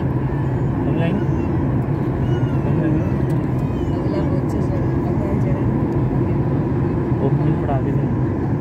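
Steady drone of an airliner's engines and airflow heard inside the passenger cabin, with faint talk of passengers over it.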